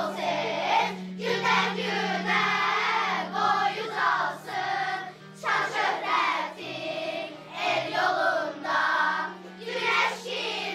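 A group of children singing a song together, in phrases broken by short breaths, over instrumental accompaniment whose low notes are held and step from note to note.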